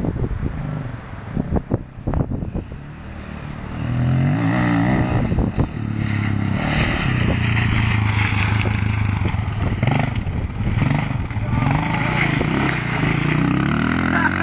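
Off-road motorcycle engine revving as the bike rides close past. It gets loud about four seconds in and stays loud, its pitch rising and falling with the throttle.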